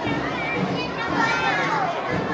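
A group of young children chattering and calling out at once, many high voices overlapping without a break.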